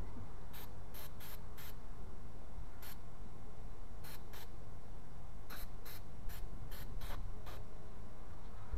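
Aerosol can of electronic contact cleaner spraying a mass airflow sensor in about a dozen short hissing bursts, in clusters: four in the first two seconds, a few in the middle, and a quick run of seven near the end.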